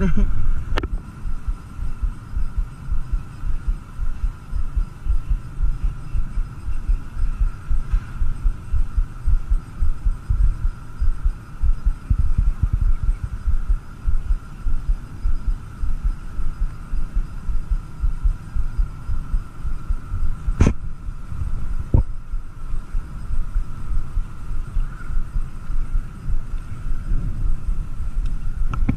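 Wind buffeting an action camera's microphone: an irregular low rumble that rises and falls without a steady beat, with a faint steady high hum behind it. Two sharp clicks come about two-thirds of the way in.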